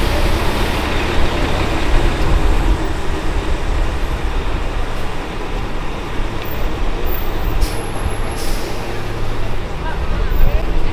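City avenue traffic noise, a steady low rumble from buses and cars passing close by. A brief hiss about eight seconds in.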